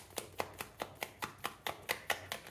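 A deck of oracle cards being shuffled by hand, the cards clicking against each other in quick, even taps, about five a second.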